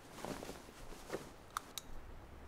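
A duvet rustling as a child dives into bed and pulls it over himself, followed by two sharp clicks a fraction of a second apart near the end.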